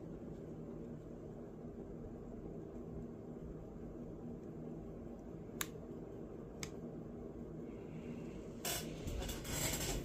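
Quiet room tone with a faint steady hum, two small clicks about a second apart in the middle, and rustling handling noise near the end.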